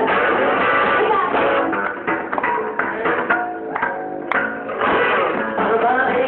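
Live rockabilly band playing, with drum kit, upright double bass and guitar, in a muffled, lo-fi recording. The music thins out for about a second past the middle, and a sharp click cuts through at about four seconds in.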